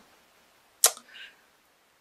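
A single sharp click a little before the middle, followed by a faint, short breathy sound.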